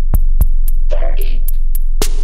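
Miami bass music: a loud, steady sub-bass tone held under a drum-machine beat of sharp clicks, with a short sampled stab about a second in.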